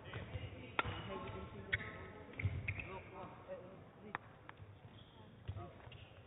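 Badminton hall ambience during a break in play: faint background chatter with several scattered sharp knocks and taps.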